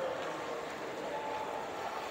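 Steady indoor shopping-mall ambience: an even background hum with faint, indistinct distant voices.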